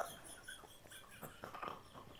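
A man's faint, suppressed laughter: soft breathy chuckles held back under the breath.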